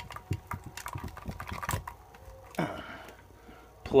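Handling noise: a quick, irregular run of light clicks and rattles as a plug and extension cord are handled, then a short rustle near the end.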